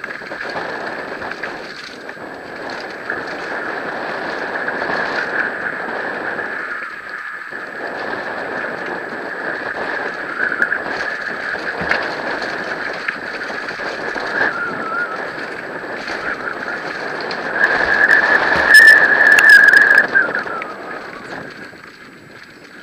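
Mountain bike descending a dirt trail at speed: a continuous rush of tyre and trail noise and wind, under a steady high whine that wavers with speed. It swells to its loudest near the end, with a few sharp clicks.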